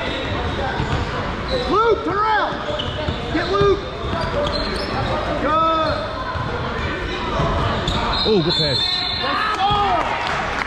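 A basketball being dribbled on a hardwood gym floor during play, in an echoing hall with the crowd's noise around it. About five short sounds that rise and fall in pitch stand out over it, with the loudest moments near two seconds and four seconds in.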